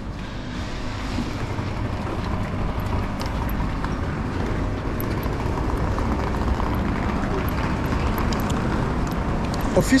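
Steady rumble and hiss of a railway station platform beside a standing train, slowly growing louder; a man's voice starts at the very end.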